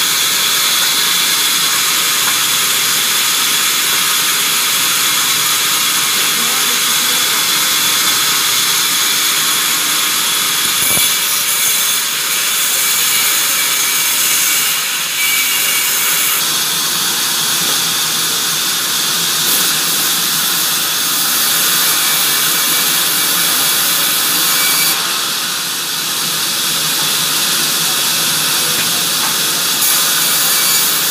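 Large vertical band saw in a sawmill running and ripping a log lengthwise: a loud, steady, high-pitched sawing noise that shifts in tone about halfway through and again near the end.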